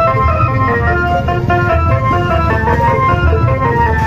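Loud music played through the horn loudspeakers of an obrog cart: a melody of held notes over a steady bass beat.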